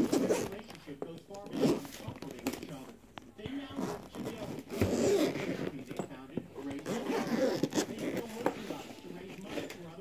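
Zipper on a hard-shell drone carry case being pulled open around its edge in a series of uneven strokes.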